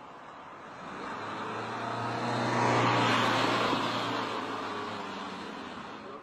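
A motor vehicle passing by on the street: it grows louder from about a second in, is loudest around the middle, and fades away near the end.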